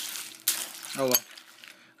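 A metal spoon stirring Special K flakes in milk in a ceramic bowl: two noisy scrapes through the flakes in the first second, with a light click as the spoon meets the bowl.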